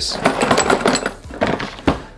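Handling noise from a box of small bike parts, with a dense clatter of clicks and rustles as it is moved, and a knock near the end as it is set down on a desk.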